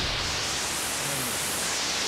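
Steady static hiss, an even rush of white noise with no tune or words in it.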